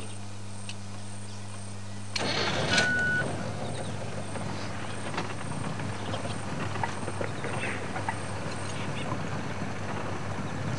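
Open safari vehicle's engine picking up about two seconds in as the vehicle pulls away, then running steadily with rumbling road noise as it drives along a dirt track.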